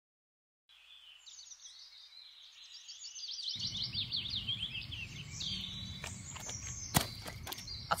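A small bird singing a rapid series of high, falling chirps over outdoor background noise, which comes up about three and a half seconds in. A few sharp clicks near the end.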